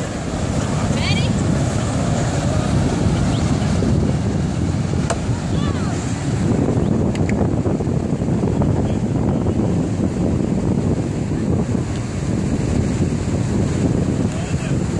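Wind buffeting the phone's microphone in a steady, low rumble, over the wash of surf.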